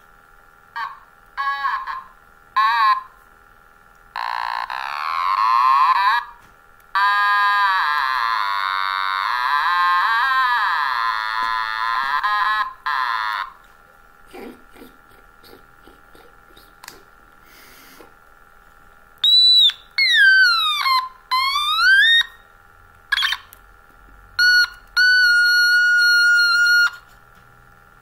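Otomatone electronic toy instrument being played: a few short notes, then long wavering notes, a sweeping slide down and back up about two-thirds through, and a steady held note near the end.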